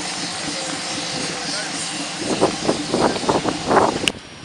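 7¼-inch gauge miniature railway passenger train rolling past at close range, a steady running noise, with a run of sharp irregular sounds in the last two seconds.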